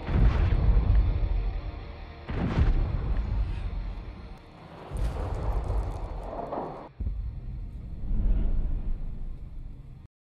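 War-film battle soundtrack: heavy explosions with deep, rolling rumble. There are four blasts, the first right at the start and the others about two to two and a half seconds apart.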